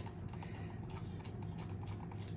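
A run of faint light clicks from a fine-tip Phillips screwdriver turning a small screw out of a plastic body post on a toy-grade RC car.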